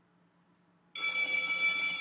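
Electric school bell ringing, starting suddenly about a second in and holding one steady, high ring.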